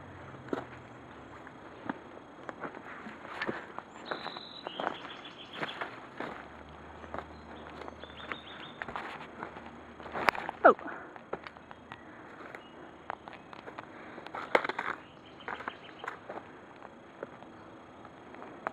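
Footsteps crunching through dry leaf litter and twigs on a forest floor, with rustling from the handheld phone moving. Irregular crackles run throughout, with one sharper snap just past the halfway point.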